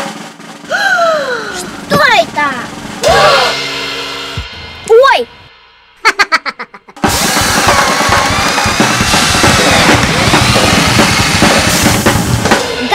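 Short child exclamations over light background music, then about seven seconds in a loud, busy music track with drums starts.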